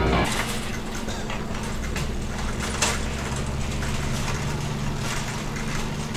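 Parking-lot background with a steady low engine hum from a running vehicle. A single sharp click is heard close to three seconds in.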